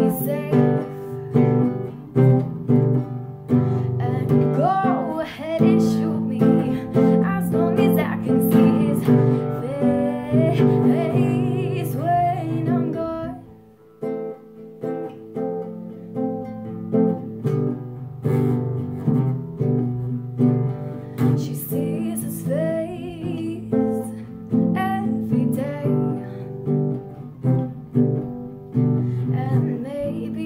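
A girl singing to her own strummed acoustic guitar. There is a brief break in the playing about halfway through, and then the strumming and singing go on.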